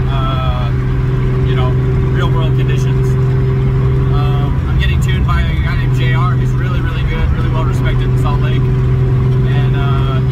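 Steady in-cabin drone of a car cruising at freeway speed: a constant low engine and road hum that holds one pitch throughout. A man talks over it.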